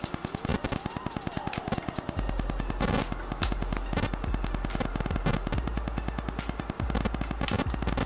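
Rapid, evenly spaced crackling clicks of static from a faulty microphone setup, with a steady low hum joining about two seconds in.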